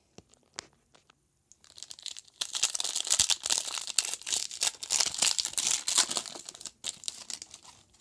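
A hockey card pack's shiny wrapper is torn open and crinkled by hand, a dense crackling from about one and a half seconds in until near the end, with a few light clicks before it.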